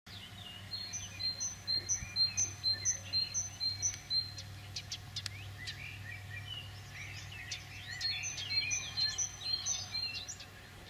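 Songbirds singing. One repeats a high two-note phrase about twice a second, in a run near the start and again near the end, over other scattered chirps and a faint low steady hum.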